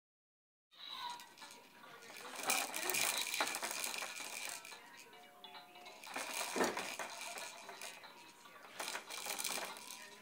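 Baby activity jumper (Fisher-Price Jumperoo) rattling and clattering as a baby bounces in it and bats at its toys, with snatches of the toy's electronic tones. The rattling comes in irregular spells, busiest in the first half.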